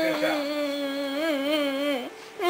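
Pomeranian puppy howling: one long, held cry with a slight waver in pitch that stops at the end.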